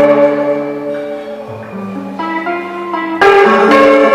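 Solo electric guitar played live: chiming chords ring and slowly fade, new notes come in softly around the middle, then a loud strummed chord strikes near the end.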